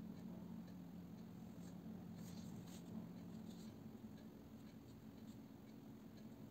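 Faint strokes of a fine paintbrush on watercolour paper, a few light scratchy touches clustered about two to three seconds in, over a low steady hum that stops a little past halfway.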